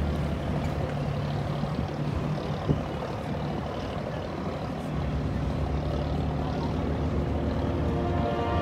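A boat engine running with a steady low rumble, under a wash of water and wind noise; a single short knock almost three seconds in.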